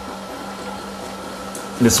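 Steady mechanical hum with a constant low tone and a fainter higher one, from a sous vide immersion circulator running its pump and heater in a water bath. A man's voice comes in near the end.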